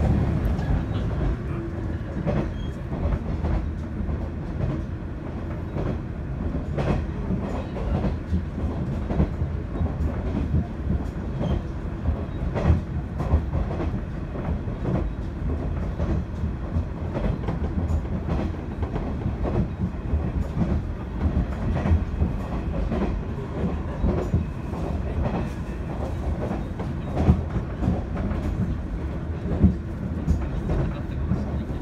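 Inside the cabin of a JR East KiHa 110 series diesel railcar running along: a steady low engine and rolling drone, with frequent irregular clicks and knocks from the wheels on the track.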